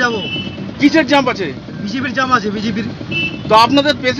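Men talking in Bengali inside an ambulance's cab, over a steady low rumble from the vehicle.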